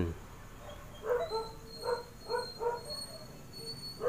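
Faint, short, high-pitched yips of a small dog, about six in a row starting about a second in.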